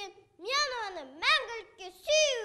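A young girl reciting a poem aloud in a high voice, her phrases rising and falling in pitch, with a brief pause shortly after the start.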